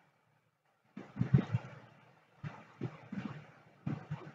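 A few irregular computer keyboard keystrokes in small clusters, starting about a second in.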